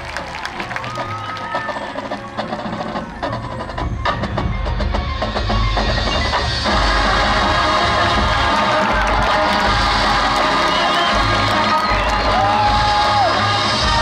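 High school marching band playing its field show: percussion strikes over quieter winds at first, then the full band swells and comes in loud about six and a half seconds in, holding a dense sustained chord texture.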